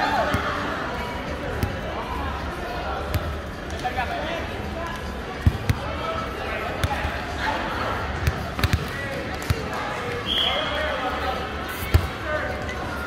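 Volleyball rally: a string of sharp slaps of hands and arms hitting the ball, several in quick succession between about five and ten seconds in, over players' voices and calls.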